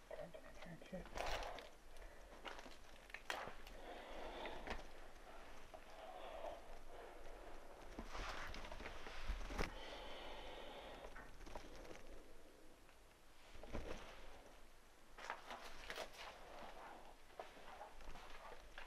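Footsteps crunching and shuffling over debris on the floor of a derelict building, with scattered sharp clicks and knocks and faint, indistinct voices.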